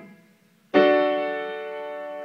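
Piano chord released at the start, a short silence, then a new chord struck about three-quarters of a second in and held, slowly dying away. The new chord is an E major triad, E, G sharp and B.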